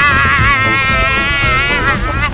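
A man's long, high-pitched yell held on one wavering note for nearly two seconds, breaking off just before the end.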